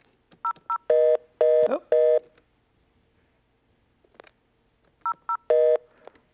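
Telephone tones: two short keypad beeps, then three short, louder buzzing tones in quick succession like a busy signal. After a pause of about three seconds come two more keypad beeps and one more busy-like tone.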